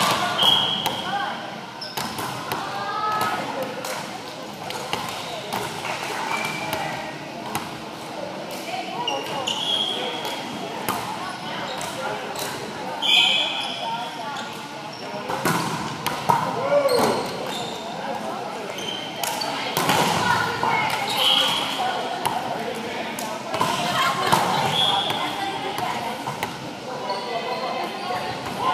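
Volleyball play in a gymnasium: sharp knocks of the ball being hit and bounced, short high squeaks of sneakers on the hardwood floor, and players' voices echoing in the hall.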